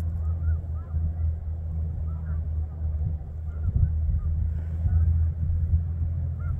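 A large flock of snow geese calling at a distance: many faint, short, high calls overlapping continuously, over a steady low rumble.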